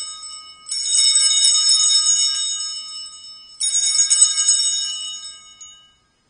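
Altar bells, a cluster of small bells shaken in rings about three seconds apart: one dying away at the start, a fresh ring about a second in and another a little past halfway, the last fading out near the end. They mark the elevation of the host just after the words of consecration.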